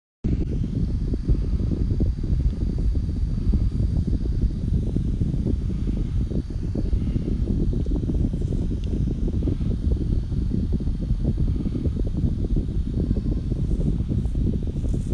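A steady, loud, low rumbling noise with no speech.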